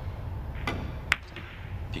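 A carom billiard shot: a faint click, then a sharp, loud click about a second in, as the cue tip and the ivory-hard resin balls strike, over a steady low hum.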